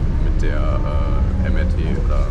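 Steady low rumble of a city bus's engine and running gear, heard from inside the cabin, with a voice talking over it.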